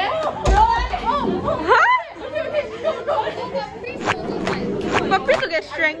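Girls' voices chattering and exclaiming in a classroom, with one rising high-pitched cry just before two seconds in. A short thump lands about half a second in.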